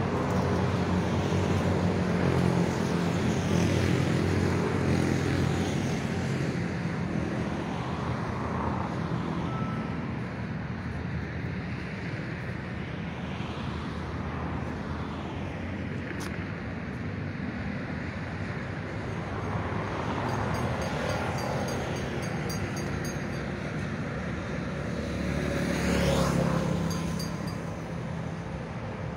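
Road traffic going by: a steady hum of engines and tyres that swells as vehicles pass, the loudest pass coming near the end.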